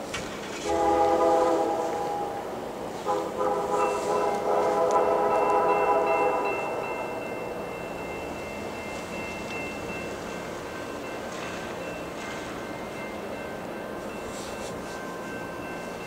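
Diesel locomotive air horn sounding two blasts, a short one about a second in and a longer one from about three to seven seconds in, from a VIA Rail EMD F40PH-2 approaching. Afterwards only the train's low steady running sound remains, with faint steady high tones.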